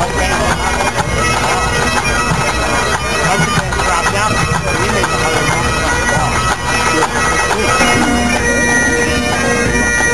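A pipe band's Great Highland bagpipes playing together, the steady drone chord held under the chanters' melody.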